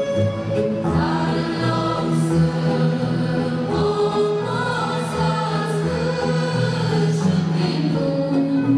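Choral music: a choir singing sustained lines over a held low note, the fuller choral texture coming in about a second in.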